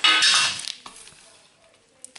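A small metal card tin clinking and scraping as it is handled, with a loud metallic rattle and ring in the first half-second that dies away.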